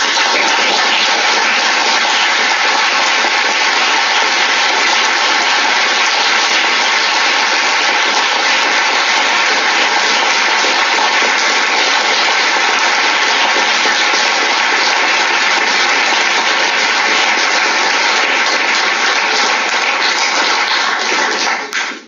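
Audience applauding steadily, thinning a little near the end, then cut off.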